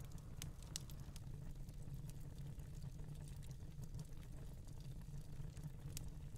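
Faint crackling of a fireplace, irregular small pops over a steady low hum.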